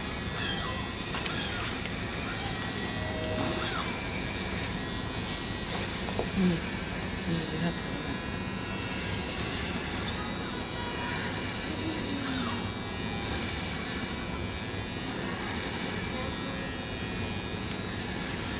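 Steady outdoor background hum with faint, indistinct voices now and then.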